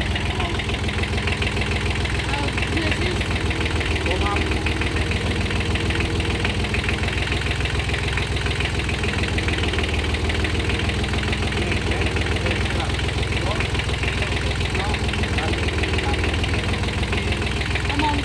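Small Kubota B7001 diesel garden tractor engine idling steadily with an even, fast diesel clatter.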